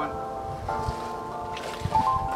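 Background music with held, sustained chords that change a couple of times.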